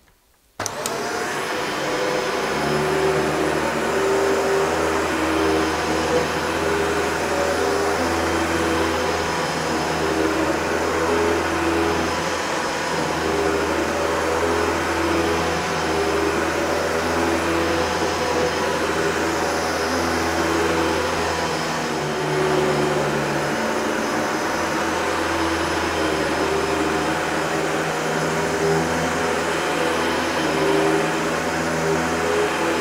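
Shark DuoClean upright vacuum cleaner running on carpet as it picks up dog hair and tumble-dryer lint. It cuts in abruptly about half a second in, then runs steadily with a low hum, its tone shifting slightly as it is pushed back and forth.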